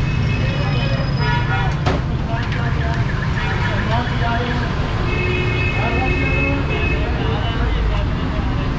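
Busy city street traffic: a steady low engine rumble with vehicle horns sounding several times, one held for about two seconds past the middle, and the voices of people around.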